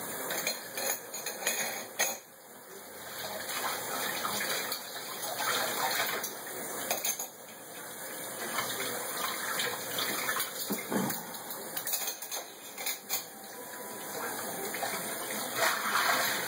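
Kitchen tap running into a stainless steel sink during hand dishwashing, its rush swelling and easing, with a few sharp clinks of cutlery and dishes.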